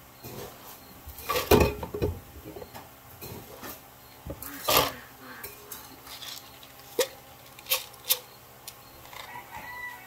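Feed scoops and plastic feed-bin lids being handled: irregular knocks and clatters, the loudest about a second and a half in and again just before five seconds, then a few sharp clicks around seven and eight seconds. Near the end comes a short pitched animal call.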